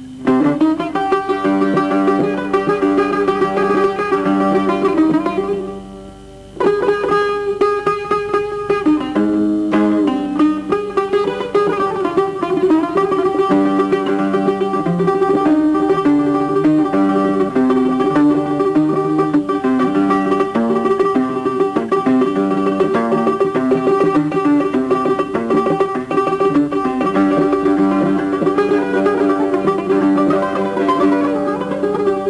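Solo buzuq improvisation (taqasim): plucked metal-string melodic phrases over a repeated drone note. The playing pauses briefly about six seconds in, then resumes with fast, dense picking.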